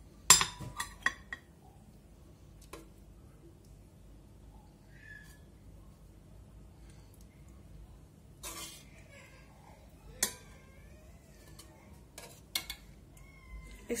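A metal ladle clinks and scrapes against an aluminium pressure-cooker pot and a ceramic serving plate as lamb stew is dished out. A sharp clink just after the start is the loudest, followed by a few lighter ones, with single knocks later and another small cluster near the end. A faint wavering high vocal sound is heard in the second half.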